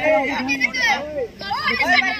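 Several boys' voices shouting and calling over one another, with a short lull just past the middle.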